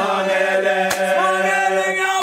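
Background music: a choir of voices chanting in held chords, in the style of a South African gwijo chant, with one sharp hit about a second in.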